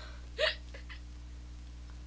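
A woman's single short, breathy catch of breath about half a second in, as her laughter dies away, followed by a low steady room hum.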